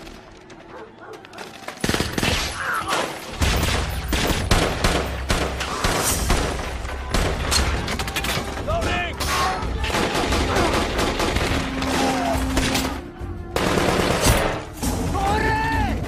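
Heavy automatic gunfire from a war-film battle soundtrack. After a quieter first two seconds, a dense, near-continuous rattle of rapid shots, with men shouting over it.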